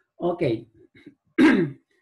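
A man clears his throat once, loudly, about a second and a half in, after a short spoken "ok".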